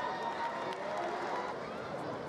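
Ballpark crowd murmur of indistinct voices and chatter from spectators, with a short faint click under a second in.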